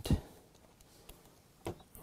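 Two short sharp clicks, a louder one just after the start and a fainter one near the end, from a screwdriver and a small loosened screw being handled. Quiet in between.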